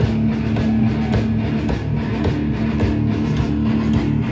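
Hard rock band playing live: loud electric guitars through Marshall amplifiers holding low sustained notes over bass and drums, with no vocals.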